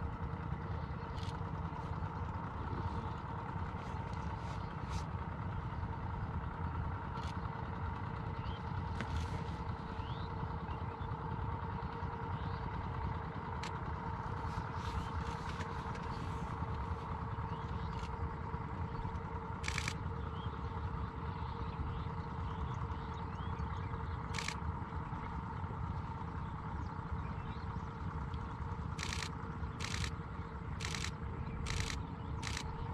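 Steady drone of a small engine running at a constant speed, with an even hum over a low rumble. A few sharp clicks of a DSLR's shutter cut through it, several in quick succession near the end.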